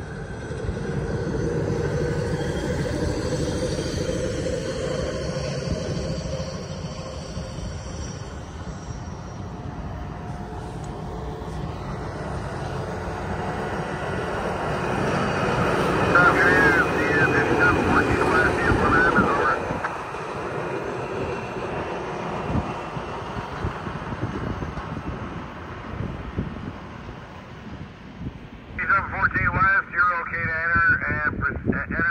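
Diesel engine of a Doosan road-rail wheeled excavator running as it travels along the track. It builds to its loudest about halfway through as the machine passes close, with a warbling high sound in that stretch, then eases off as it moves away.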